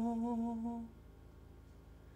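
Unaccompanied male solo voice holding a low sung note with a slight waver, ending a little under a second in, followed by quiet room tone.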